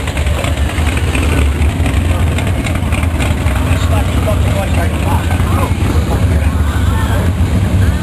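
Loud, steady low engine rumble from classic cars rolling slowly past at low speed, with people talking in the background.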